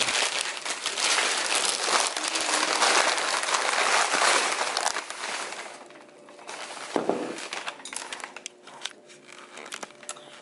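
Plastic shopping bags and wrapping paper crinkling and rustling as they are pulled off a ceramic cookie jar by hand. The crinkling is dense and continuous for about the first half, then thins to scattered rustles, with a single knock about seven seconds in.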